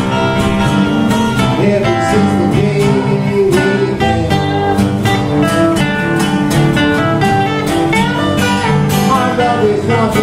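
Two acoustic guitars playing a slow blues together, a steady run of plucked notes and chords between sung verses.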